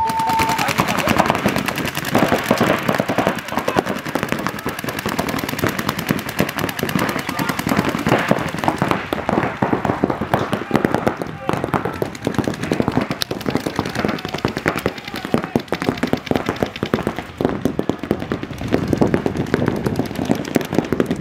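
Several paintball markers firing rapid, continuous streams of shots from both sides: a dense, unbroken rattle of popping that stays loud throughout. This is the heavy firing that opens a point in tournament paintball.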